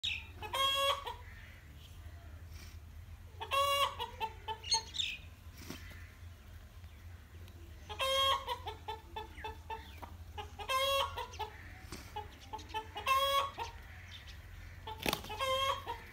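Chickens calling: six short, loud squawks spaced a few seconds apart, with softer clucks in between.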